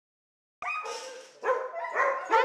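Dog barking, about three barks, the first about half a second in.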